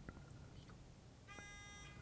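A contestant's buzz-in buzzer on a quiz-show podium sounding once as a steady electronic tone. It starts after about a second and a half of near silence, signalling that a player has buzzed in to answer.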